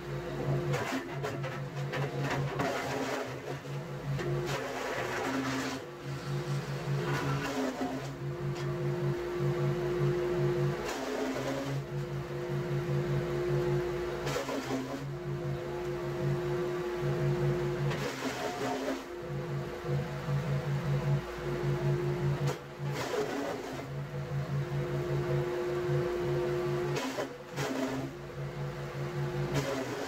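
Petrol garden chipper-shredder running steadily at speed, with short bursts of louder noise every few seconds at uneven intervals as cut leafy branches are shredded.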